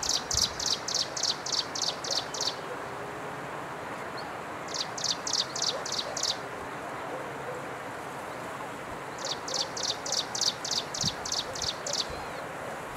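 Striped prinia (Swinhoe's prinia) singing: three bursts of rapid, evenly repeated high notes, about four a second, the first ending about two and a half seconds in, the second around five to six seconds, the third starting near nine seconds and running almost to the end, over a steady background hiss.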